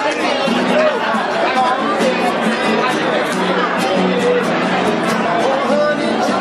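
Acoustic guitars strummed live, with the chatter of a crowd of guests around them.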